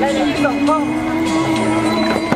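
A voice speaking a few words of Thai over music, with a long held note running through it.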